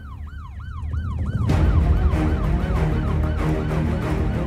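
A rapid siren sound, rising and falling about three times a second, over the closing theme music; the music swells back in about a second and a half in while the siren fades.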